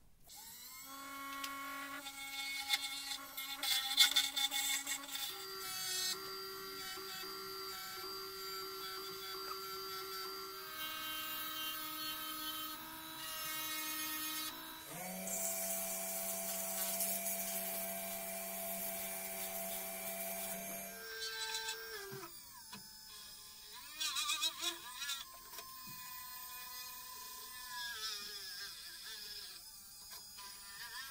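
Variable-speed wood lathe motor running with a steady whine that winds up at the start and shifts pitch in steps several times. Past the middle, a hiss of sandpaper held against the spinning workpiece lies over it for several seconds. The motor winds down about two-thirds of the way in, and quieter, irregular sounds follow.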